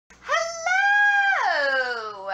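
A woman's long, high vocal whoop: it rises, holds one steady high note for about half a second, then slides down in pitch.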